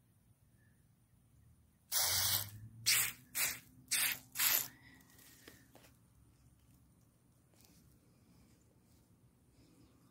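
Five bursts of soapy water from a garden sprayer set to its shower pattern, hitting a leaf and wet soil. The first burst is the longest, followed by four short squirts in quick succession about two to five seconds in.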